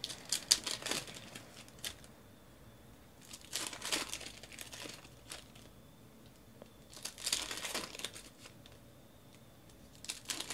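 Foil wrappers of trading card packs crinkling and tearing as they are opened by hand, in three bursts a few seconds apart.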